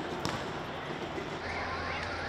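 A sharp bang a quarter-second in over riot street noise, then a siren starts about one and a half seconds in, wailing quickly up and down, about three sweeps a second.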